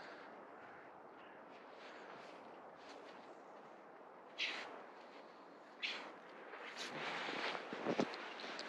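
Finnish Spitz sniffing with her nose buried in the snow at a burrow, two short sharp snorts standing out about four and a half and six seconds in, over faint soft noise.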